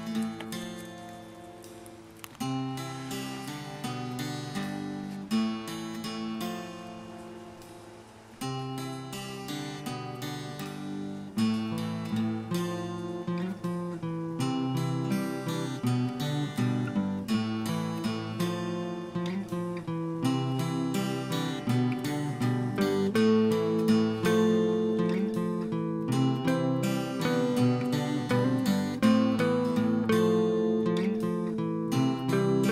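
Background music on acoustic guitar, plucked and strummed, quieter for the first few seconds and fuller from about eight seconds in.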